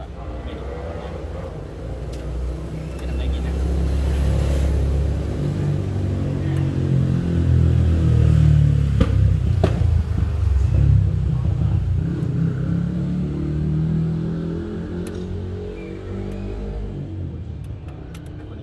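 A motor vehicle's engine rumble passing close by, building over several seconds, loudest about halfway through, then fading away. A couple of sharp clicks come about nine to ten seconds in.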